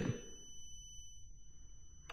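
Quiet room tone with a faint, steady high-pitched whine.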